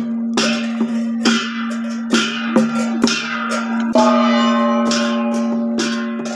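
Funeral procession music: a gong and cymbals struck irregularly, about once a second, each strike ringing off, over a steady held tone.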